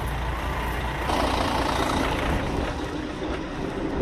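A heavy vehicle's engine running nearby, a steady low rumble, with a rushing noise that swells up about a second in and eases off over the next couple of seconds.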